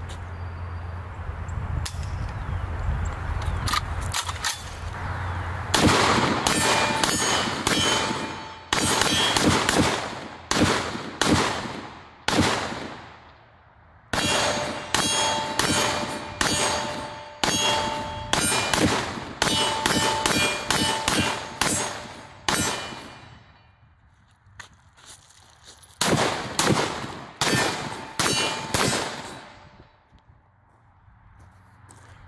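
Pioneer Arms Hellpup AK pistol in 7.62x39 firing three rapid strings of semi-automatic shots, starting about six seconds in, with a pause between strings. A steady metallic ringing from steel targets being hit runs through the shooting.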